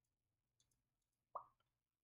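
Near silence: room tone, with one short plop about one and a half seconds in.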